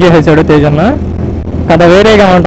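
A man talking, with a steady low drone of motorcycle riding noise underneath; the talk breaks off briefly a little past the middle.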